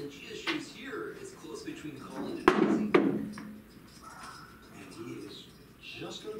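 Two sharp, hard knocks about half a second apart, with a short ringing after them, over faint background talk.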